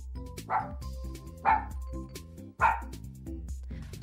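Three short dog barks about a second apart, over light background music.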